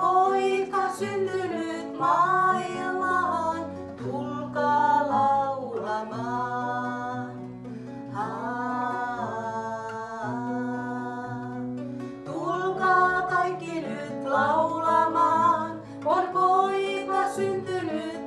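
Two women singing a Finnish Christmas carol, phrase by phrase with short breaths between, to an acoustic guitar played along.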